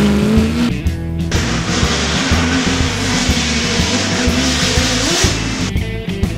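Stock car's V8 engine running hard as the car pulls away up the course, mixed with background music.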